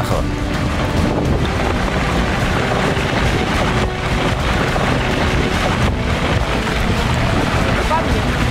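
Rockfall: a mass of rock crashing down a cliff onto a glacier, a continuous heavy rumble that stays loud throughout, mixed with wind buffeting the microphone.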